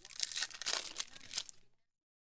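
A foil trading-card pack wrapper is torn open and crinkled by hand, giving a run of crackling rustles. It cuts off abruptly near the end.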